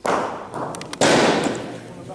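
A thrown bocce ball striking the ball lying beside the jack with a sudden loud crack at the start. A second, louder impact follows about a second later and dies away.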